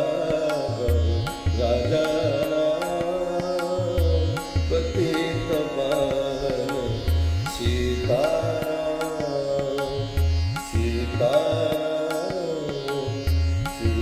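Hindustani devotional bhajan: a gliding melodic line over a steady drone, with low drum strokes keeping a regular beat.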